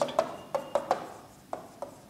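Writing on a black board: a run of short, sharp taps and scrapes as each letter stroke is made, about six in two seconds, the last ones fainter.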